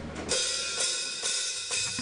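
Drum kit cymbals struck about four times, roughly half a second apart, as a count-in for the next song at a live metal concert.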